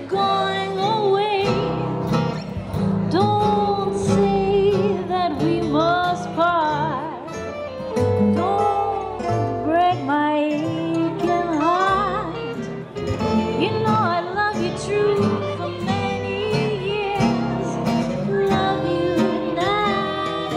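Live gypsy-jazz band: a clarinet takes a bending, gliding solo over steady strummed acoustic guitar chords and upright bass.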